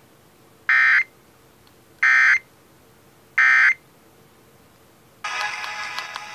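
Emergency Alert System end-of-message data tones from an FM radio: three short, loud bursts of digital modem-like tones about a second and a third apart, the code that closes the Required Monthly Test. Music starts near the end as the station returns to programming.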